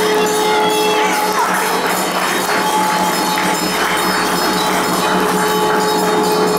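Small hand bells ringing rapidly and continuously over steady held musical tones.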